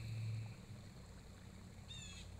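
Quiet outdoor background with a low steady hum that eases off about half a second in, and a brief high chirp near the end.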